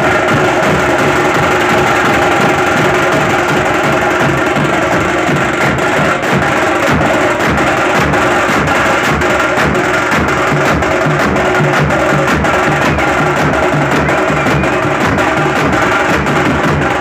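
A street drum band of large steel-shelled drums and bass drums beaten with sticks, playing loudly and without a break.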